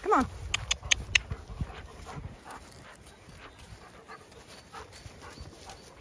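Dogs romping on grass, with a German Shepherd panting. A short falling call comes right at the start and a quick run of sharp clicks about a second in, then only soft footfalls on grass.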